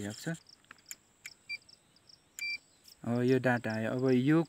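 Electronic beeps from a Gowin TKS-202N total station as it takes a distance measurement: a brief beep about one and a half seconds in and a slightly longer one about a second later. Insects chirp faintly throughout.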